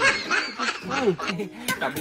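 Men's voices talking with a short laugh mixed in.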